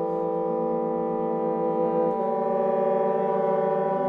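Wind quintet playing slow, sustained notes that overlap in a close, dense chord. Single voices step to new pitches about half a second in, again about two seconds in, and near the end, while the others hold.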